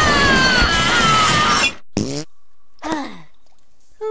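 Cartoon character's loud, long yell over a rough rushing noise, its pitch falling, cut off abruptly. Two short, relieved sighing groans follow.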